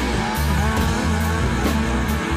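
Rock music with no singing: electric guitar over a steady bass line and drums keeping an even beat.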